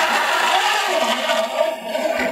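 Flat metal file scraping steadily along the tops of a crosscut saw's steel teeth: jointing the saw, filing the teeth down to the same height before sharpening.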